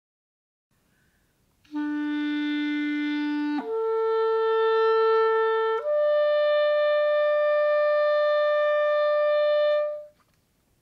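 Clarinet playing three long, steady notes in the middle (clarion) register, each a step higher than the last, starting about two seconds in. The last note is held about four seconds and stops near the end. It is an embouchure exercise in which each note should keep the same clear tone as the one before.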